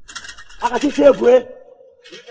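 A man's loud, pitch-bending cry ("Hey") over a fast, dry rattling, trailing off into a held tone.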